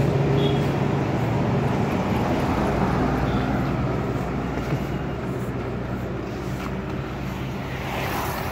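Street traffic noise: a motor vehicle's engine hum close by, slowly fading over the first few seconds, over the general rush of road traffic.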